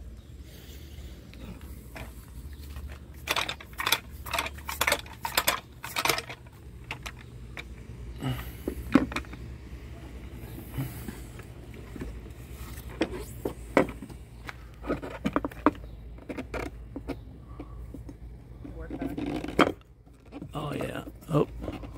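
Clicks, knocks and light clattering from a roof-rack crossbar and its plastic-and-metal feet being handled and set into place on a car's roof and door frame. The sounds come in irregular clusters over a low steady rumble.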